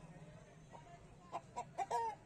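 Rooster clucking: a quick run of short clucks in the second half, the last one the loudest.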